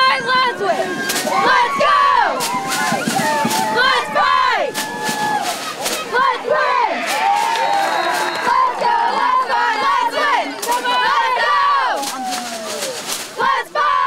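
A squad of high-school cheerleaders shouting and yelling cheers together, many high voices overlapping, with short sharp sounds now and then.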